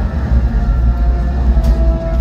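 Dark, dramatic show music with long held notes over a deep, steady low rumble.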